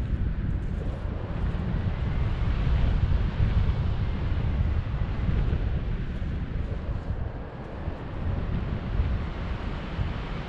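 Airflow buffeting an action camera's microphone under a tandem paraglider in flight: a gusty low rumble that eases a little past the middle.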